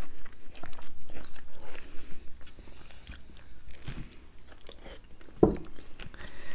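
Close-miked chewing and biting of fresh fruit: irregular wet crunches and mouth clicks. A short 'mm' hum comes about five seconds in.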